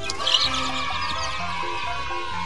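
Background music with a long animal call over it: the call starts with a sharp burst and then holds, slowly falling in pitch, for about two and a half seconds.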